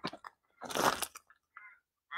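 Crunching footsteps on a gravel path, a few sharp crunches near the start and a louder scrunch under a second in.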